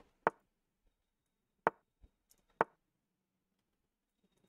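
Three sharp computer mouse clicks a second or so apart, with a couple of fainter ticks between them.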